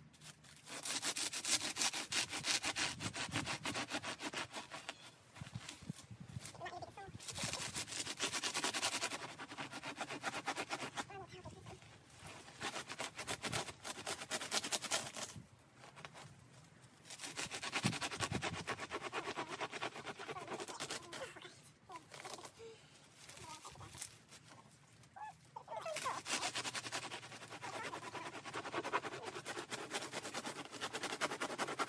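Hand-held garden saw cutting through the dry, fibrous old shields at the back of a large elkhorn fern: quick back-and-forth strokes in several bouts of a few seconds each, with short pauses between.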